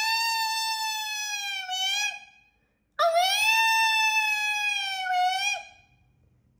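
Cartoon butterfly character's sad wailing cry: two long, wavering high-pitched wails, each about two and a half seconds long, the second starting about three seconds in.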